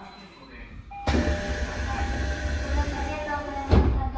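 Sliding passenger doors of a Tokyo Metro 13000-series subway car opening at a station: a short chime tone about a second in, then a sudden loud rush and rumble as the doors slide open, ending in a sharp knock near the end as they reach the stop.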